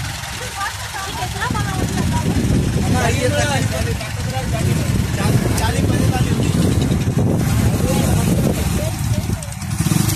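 A vehicle engine running steadily as a low rumble, with people's voices talking over it in the first few seconds.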